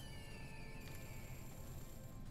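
Faint online slot game sound effects as the reels settle on a win: a single tone sliding slowly downward, joined about a second in by thin, high, steady ringing tones.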